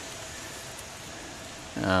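Steady, even background hiss of outdoor ambience with no distinct events, then a man's voice saying "um" near the end.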